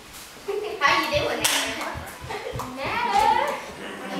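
Several young girls' voices chattering, with scattered hand clapping.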